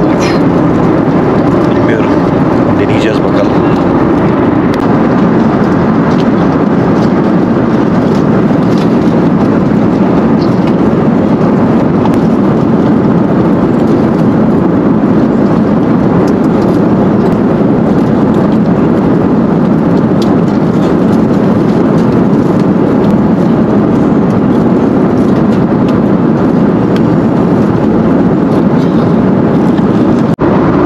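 Jet airliner cabin noise in cruise flight: a loud, steady, deep rushing roar that does not change.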